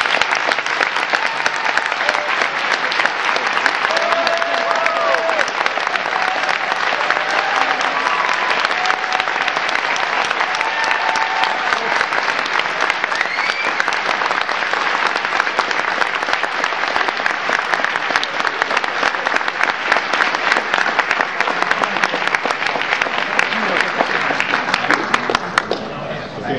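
Audience applause, a dense, steady clapping that runs on for the whole stretch, with a few voices calling out over it in the first half; it dies down near the end.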